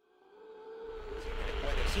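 A low rumble and a steady held tone swell up out of silence, growing steadily louder, as in film-trailer sound design; a man's voice starts just at the end.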